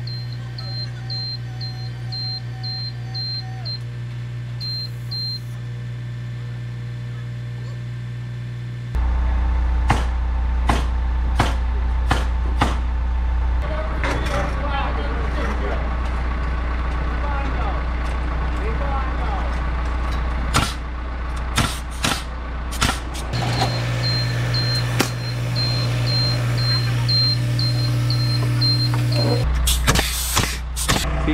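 Genie GS-2632 electric scissor lift moving its platform: a steady hum from the hydraulic pump motor with the motion alarm beeping about three times a second, for the first several seconds and again near the end. In between there is a louder low rumble with scattered sharp knocks and clicks.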